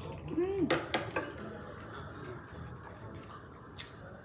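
Close-miked chewing of noodles and rice cakes, with a short rising-and-falling voiced sound and three sharp clicks about a second in.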